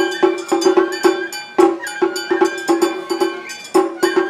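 Matsuri-bayashi, Japanese festival music: a quick, uneven run of percussion strikes with a clanging metallic ring, about three to four a second, over a sustained high bamboo-flute melody.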